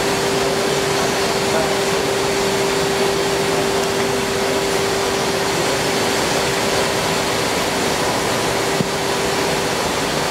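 Steady drone of distillery plant machinery, an even rushing noise with a constant hum held on one pitch.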